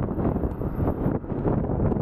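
Wind buffeting the microphone of a camera carried on a moving bicycle, a fluttering rush with road and traffic noise beneath it.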